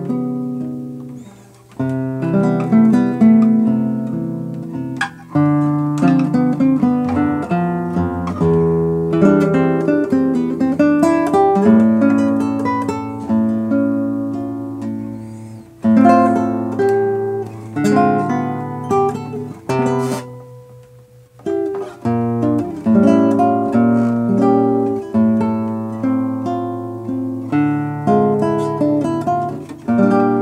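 Solo classical guitar played fingerstyle: plucked chords under a slow melody line. About two-thirds of the way through, the notes die away briefly before the playing resumes.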